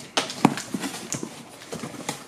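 A series of knocks and taps from a mystery box being handled, the loudest about half a second in, followed by lighter clicks.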